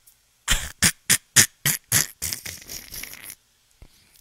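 A man laughing into a close microphone in short, breathy bursts with little voice, about seven in quick succession, trailing off into softer breaths.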